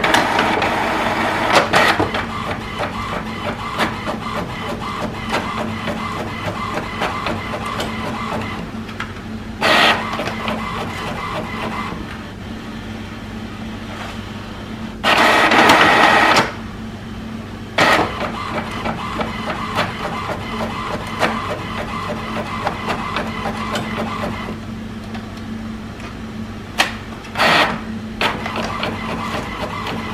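HP Envy Pro 6455 inkjet all-in-one printer running a colour copy job, its document feeder pulling the original through while the copy prints, with a steady motor hum under a busy mechanical clatter. A louder whirring burst lasting over a second comes about halfway, with shorter ones near ten seconds in and near the end.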